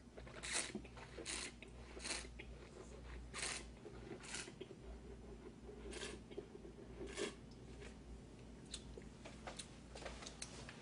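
Red wine being sipped and slurped, with air drawn through the wine in the mouth to aerate it, heard as a series of short, airy sucking slurps at irregular intervals.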